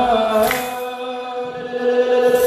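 Ethiopian Orthodox youth choir chanting a wereb hymn in unison, holding one long steady note.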